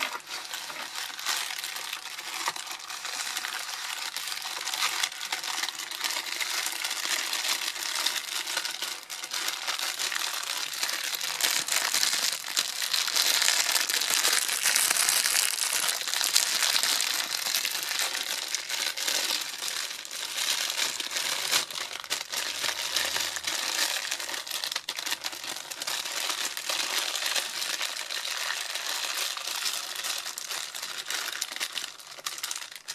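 Clear plastic packaging crinkled and rubbed by hands close to the microphone: a continuous dense crinkling, loudest about halfway through.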